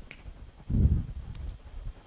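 A short, dull low thump about three quarters of a second in, with a few faint clicks.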